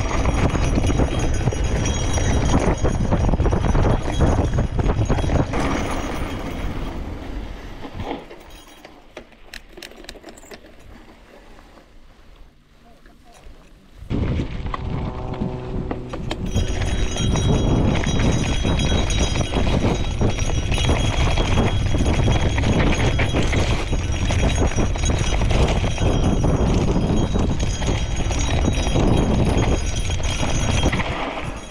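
Wind rushing over the microphone, with the crunch and rattle of a gravel bike on a bumpy dirt singletrack. It drops much quieter for several seconds in the middle, then comes back suddenly and stays loud.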